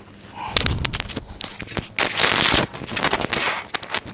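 Sheets of paper being handled and rustled close to the microphone. There are many sharp clicks and knocks, and a longer rustle about two seconds in.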